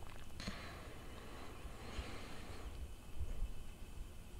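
Faint handling noise of fingers on a plastic reel-to-reel tape reel and its quarter-inch tape: a soft click about half a second in, then a light rustle for a couple of seconds over low room rumble.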